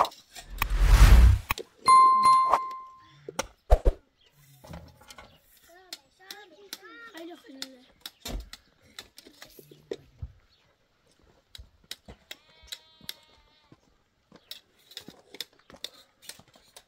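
A loud rush of noise lasting about a second, then a short, clear bell-like ding: the sound effect of an on-screen subscribe-button and bell animation. Faint voices and scattered light clicks follow.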